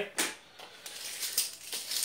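A retractable tape measure being handled and its blade pulled out: a sharp click just after the start, then a light, irregular scratchy rattle.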